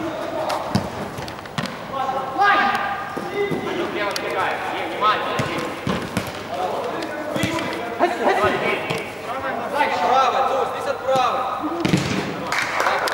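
Players shouting to one another during a small-sided football game on artificial turf, with several sharp thuds of the ball being kicked.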